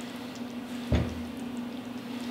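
A heavy pot lid, from an enamelled cast-iron Dutch oven, set down with a single dull thud about a second in, over a steady low hum.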